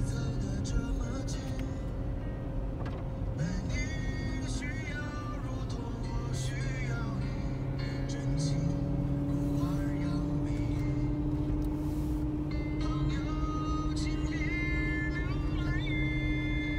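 Steady engine and road drone heard from inside a moving car, its pitch creeping slightly upward over the second half. Music with a singing voice plays over it.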